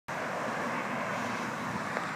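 Steady road traffic noise from cars driving through an intersection.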